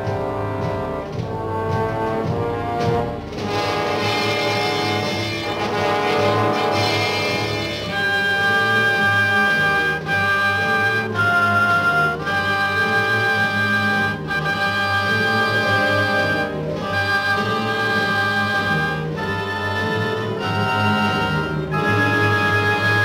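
Orchestral music with brass. Shorter, moving notes at first give way, about eight seconds in, to long held chords that change every second or two.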